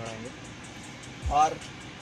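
Steady low background inside a car cabin with faint music from the car's stereo and a light, even ticking beat. A low thump and a single spoken word come about one and a half seconds in.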